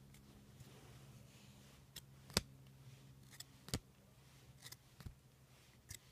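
Trading cards being handled and sorted by hand: several short, sharp clicks of card edges and stock, the loudest about two and a half seconds in, over a faint steady hum.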